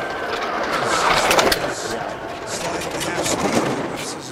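Skeleton sled's steel runners rushing over the ice as it passes a trackside microphone, the noise swelling about a second in and then easing, with short clicks and knocks on top.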